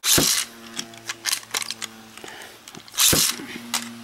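Metal Beyblade spinning tops launched from ripcord launchers into a clear plastic stadium: a loud rip of the launcher at the start and again about three seconds in. Between the launches the spinning tops whir steadily, with many sharp clicks.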